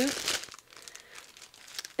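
Clear plastic packaging crinkling in faint, irregular rustles as it is handled around a metal washi tape hoop.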